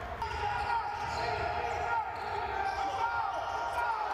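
Live basketball court sound on hardwood: a ball bouncing, a few short squeaks of sneakers, and the hum of a large hall.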